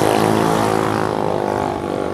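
A vehicle engine running with a steady, even drone that eases off slightly in the second half.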